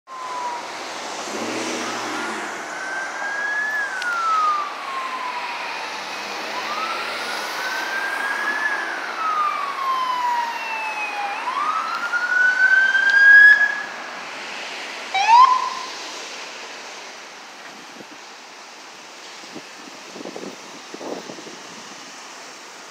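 Police siren on a Ford Explorer police SUV sounding a slow wail, each sweep rising and falling over four to five seconds and growing louder as it approaches. About fifteen seconds in it gives one quick rising chirp and then shuts off, leaving traffic noise.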